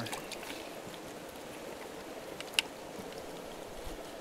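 Water sloshing and dripping in a plastic bucket as hands move a fish about in it, with a few small clicks and one sharp click about two and a half seconds in.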